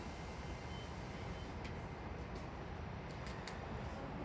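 Railway tank cars rolling slowly past on the track: a steady low rumble of wheels on rail, with a few short high-pitched clicks and squeaks in the second half.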